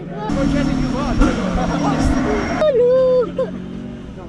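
People's voices over a steady hiss with low hum-like tones. The hiss cuts off abruptly a little past halfway, leaving a single high voice.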